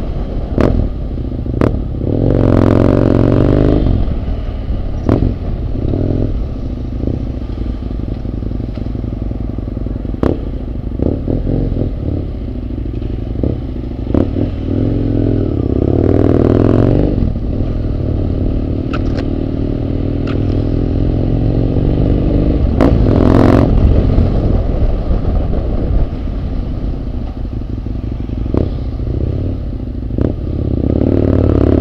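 Husqvarna Nuda 900R's parallel-twin engine running and pulling away, its revs climbing in three bursts of acceleration: about two seconds in, around sixteen seconds and around twenty-three seconds. Occasional sharp clicks sound over it.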